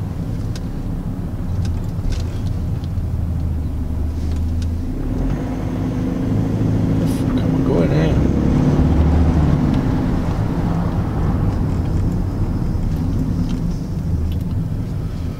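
Cabin noise of a Mercedes-Benz car being driven: a steady low engine and road rumble, a little louder in the middle.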